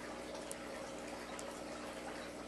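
Low room noise with a steady faint hum, broken by two faint small clicks.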